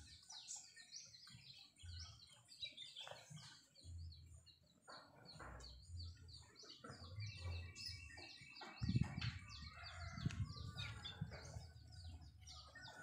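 Faint chirping of small birds: many short, high chirps throughout, with a rapid trilling call about halfway through, and soft low bumps.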